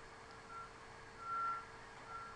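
Faint electronic beeping: three short beeps at one steady, fairly high pitch, about a second apart, over a low steady hum.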